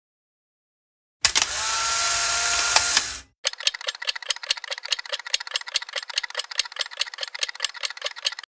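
A burst of loud hiss lasting about two seconds, then a rapid, even run of light mechanical clicks, about nine a second.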